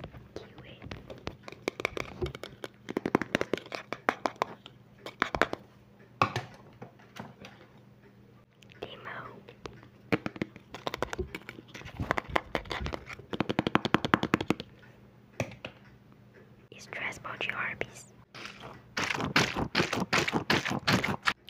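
ASMR sounds close to a microphone: whispering, and clusters of rapid clicking and crackling from fidget toys handled right at the mic.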